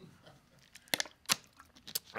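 A plastic water bottle being handled, its thin plastic giving a few sharp crackles and clicks, about a second in and again near the end.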